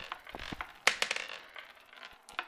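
Paintbrush bristles dabbing and scratching on paper: an irregular run of crisp, scratchy clicks, with the sharpest one just under a second in.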